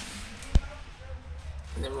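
A single sharp thud about half a second in, followed by a low rumble, then a man's voice near the end.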